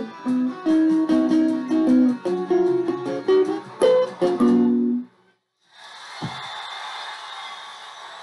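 Electric guitar, a Squier Stratocaster-style, played clean, with picked single notes and arpeggiated chords. The playing stops abruptly about five seconds in. After a brief silence comes a steady hiss and a single thump.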